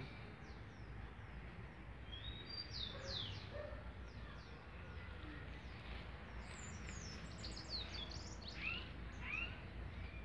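Small birds chirping faintly: quick runs of short, high chirps about two to four seconds in and again from about six and a half to nine seconds, over a steady low background rumble.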